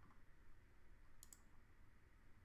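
Two quick computer mouse clicks close together a little over a second in, over near-silent faint room hiss.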